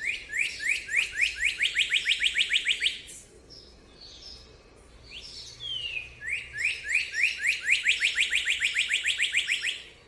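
Northern cardinal singing: two song phrases, each a slurred whistle followed by a rapid run of about six rising whistled notes a second. The first phrase runs through the opening three seconds, and the second starts about six seconds in.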